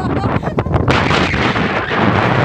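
Strong wind buffeting a phone's microphone: a loud, rough rumble with irregular thumps, joined about a second in by a rushing hiss.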